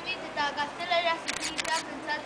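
Children's high voices speaking, with a quick cluster of four or five sharp clicks about three quarters of the way through.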